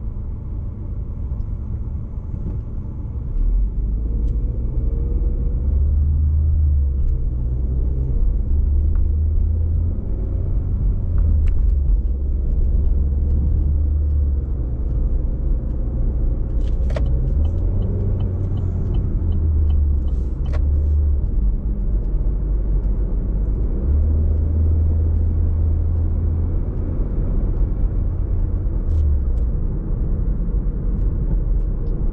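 Inside a car's cabin: engine and road noise, quieter at first while stopped in traffic. About three and a half seconds in it becomes a louder steady low rumble as the car pulls away and drives along.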